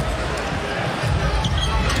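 Basketball arena sound: steady crowd noise with a basketball being dribbled on the hardwood court.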